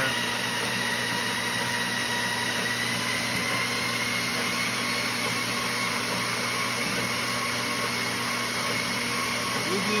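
Electric treadmill running at a steady speed: an even motor whine with a high tone that creeps up slightly, over the hiss of the moving belt.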